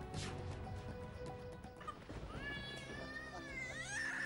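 Dramatic TV-serial background music: sustained notes with a soft hit near the start, then about halfway in a high, wavering, gliding melody line comes in.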